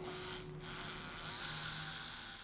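Faint steady buzzing of an electric tattoo machine, fading away toward the end.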